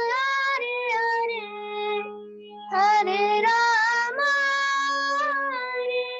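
A young girl singing a slow melody in long held notes, accompanied by sustained notes on a keyboard. She pauses for breath about two seconds in while the keyboard note carries on, then goes on singing.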